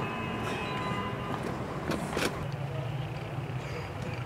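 A vehicle engine running steadily with a low hum, broken about two seconds in by a brief loud rush of noise.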